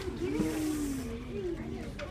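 Soft background voices in a classroom, with a brief hiss about half a second in.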